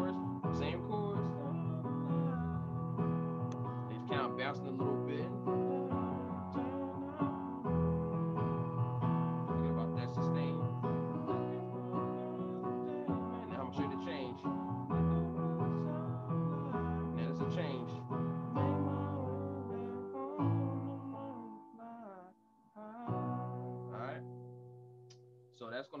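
Electronic keyboard playing sustained chords in the key of B, including F sharp minor, changing chord about every three and a half seconds, with a short pause near the end.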